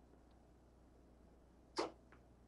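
A soft-tip dart striking an electronic dartboard once, a single sharp hit near the end against faint room noise.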